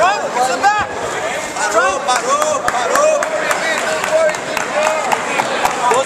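Crowd hubbub of many voices talking and shouting at once, with scattered sharp smacks.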